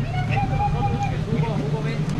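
Boat motor idling with a steady low hum, under faint distant voices.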